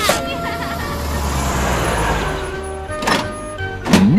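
Cartoon sound effect of a mail van's engine rumbling as it drives up, a rush that swells and fades, over steady background music, with a few sharp clicks near the end.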